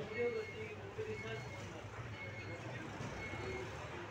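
Indistinct voices over a steady background noise.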